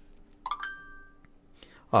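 A single short ringing tone about half a second in, rising briefly at its start and fading within a second, over a faint steady hum.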